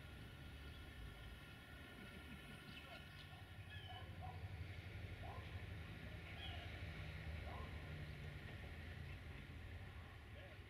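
Faint outdoor ambience: a low steady rumble with a few faint bird chirps, two of them about four seconds and six and a half seconds in.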